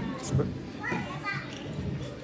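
Voices in a large room: a low murmur of speech with a short high-pitched call like a child's about a second in.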